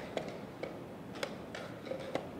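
Quick, sharp clicks of wooden chess pieces set down on a wooden board and of chess clock buttons being pressed in a fast blitz game, about half a dozen knocks a fraction of a second apart.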